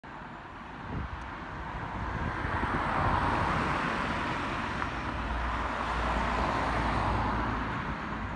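A car driving past along the road close by, its tyre and engine noise swelling over the first few seconds and then holding steady.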